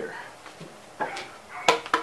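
Wooden knocks and clatter as a drilled plank is lifted and handled on a wooden workbench: one knock about a second in and several sharp ones near the end.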